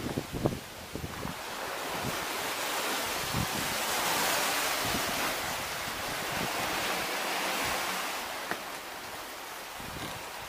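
Sea surf washing over a rocky shore, a steady hiss that swells up through the middle and fades again, with some wind. A few soft knocks near the start.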